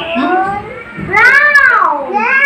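A young child's high-pitched, drawn-out call with no words, its pitch rising and then falling, about a second in, after a shorter rising sound at the start.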